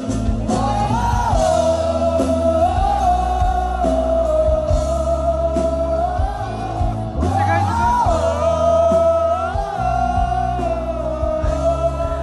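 Live rock band playing: a female lead singer holds long notes, sliding up between them, over bass guitar, drums and keyboard.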